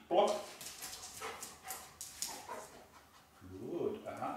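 A black Labrador vocalising in short bursts as it runs across a tiled floor to its handler.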